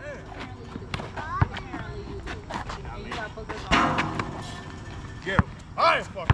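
A basketball bouncing on an outdoor asphalt court: a few single heavy thuds a second or more apart, the loudest about five seconds in. Men's voices call out and talk between the bounces.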